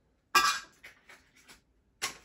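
Stiff plastic blister packaging being cut and pried open by hand: one sharp, loud crack, then several smaller crinkles and clicks, and another crack near the end.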